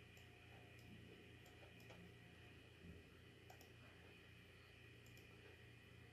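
Near silence: faint room hum with a few soft, scattered clicks of a computer mouse.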